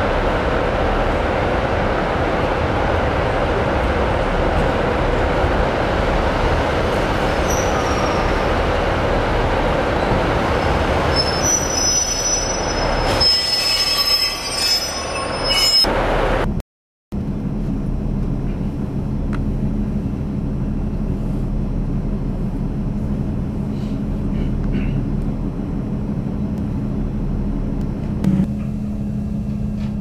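Class 156 Sprinter diesel multiple unit moving through a station train shed, its engine and wheels making a dense rumble, with a high thin wheel squeal from about 11 to 16 seconds in. After a break near 17 seconds, a steady low diesel engine hum carries on to the end.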